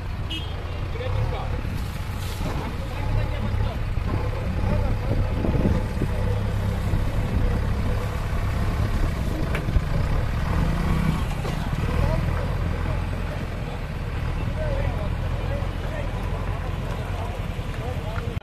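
Backhoe loader's diesel engine running steadily with a low rumble as the machine carries and tips a bucket of gravel, with people talking over it.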